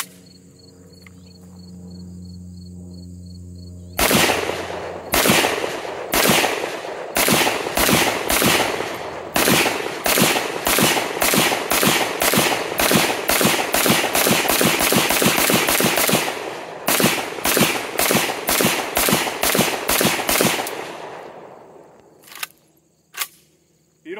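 A newly built MD-65 AK-pattern rifle in 7.62×39 is test-fired for the first time in semi-automatic fire. The shots start about four seconds in, roughly a second apart, then come several a second in a rapid string, then slow to a steadier pace before stopping about twenty seconds in.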